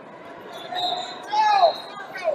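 Wrestling shoes squeaking on the mat as the wrestlers shuffle and push in a standing tie-up. The loudest squeak, about one and a half seconds in, falls in pitch.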